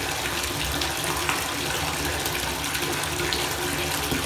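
Water running from a bathtub spout into a tub: a steady, unbroken rush.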